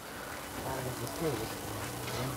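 Faint background voices with a low steady hum under them, in a pause between the main speaker's lines.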